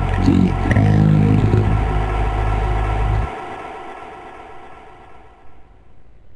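Electro house music with a heavy, distorted bass synth. The bass cuts off suddenly about three seconds in, and what is left fades away.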